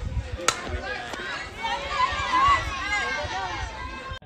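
A softball bat strikes the pitch about half a second in with one sharp crack, followed by spectators and players shouting and cheering as the batter runs.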